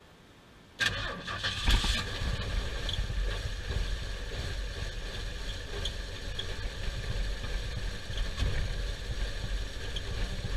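Ford F-250's 4.9-litre inline-six engine, cold-started about a second in, then idling roughly with a misfire, sounding like a farm tractor. It is running rich, and the owner suspects the old ignition parts (plugs, wires, distributor cap and rotor).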